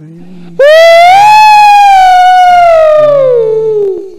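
A loud, high wailing vocal note cuts in about half a second in, holds with a slight waver, then slides steadily down in pitch. A low, steady hummed drone sounds before it and again underneath near the end.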